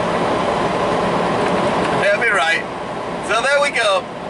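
Steady engine and road noise inside the cab of a moving semi-truck. A man's voice sounds briefly twice in the second half.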